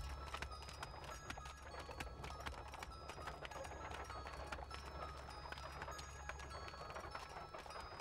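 Horse's hooves clip-clopping steadily as it pulls a carriage, over soft background music with held notes.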